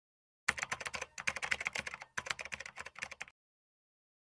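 Typing sound effect: a rapid run of key clicks as the on-screen text is typed out, with a brief break about two seconds in. It stops just over three seconds in.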